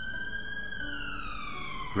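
Police car siren going past with a single long wail, its pitch climbing slowly and then sliding down through the second half.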